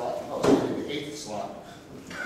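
Indistinct talking in a meeting room, with one bump or knock about half a second in, the loudest sound here.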